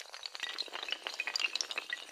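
Dense rapid clatter of many small hard clicks, the sound effect of a long row of dominoes toppling one after another.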